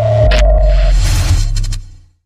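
Electronic logo sting: a deep bass rumble under a steady high tone that stops about a second in, with bursts of static-like noise and a swoosh, fading out near the end.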